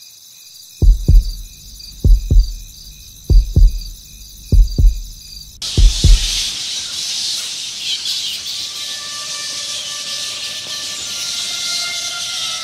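Track intro: a slow double-thump heartbeat, five beats about 1.2 s apart, over a steady high chirring like night insects. About halfway through the chirring cuts off suddenly and gives way to a hissing wash with faint held tones building beneath it.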